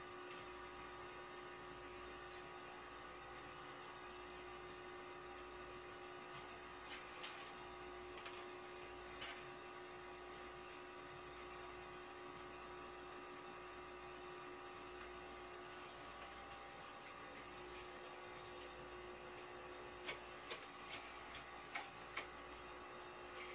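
Steady, faint electrical hum, with a few soft taps near the end as playing cards are handled.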